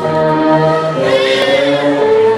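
Live band music: a sustained, held chord with no drum hits. A wavering, voice-like high note comes in about a second in.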